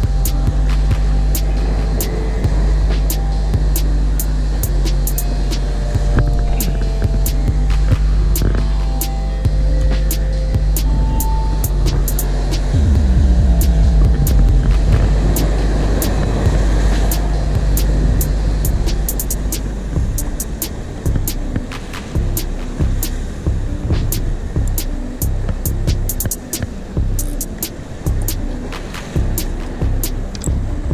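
Boat motor running with a steady low drone over wind and water noise, its pitch sliding down about halfway through. After about twenty seconds the drone gives way to irregular low rumbling of wind on the microphone.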